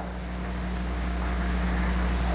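Steady hiss with a low, constant hum: the background noise of an old 16mm film soundtrack, growing slightly louder.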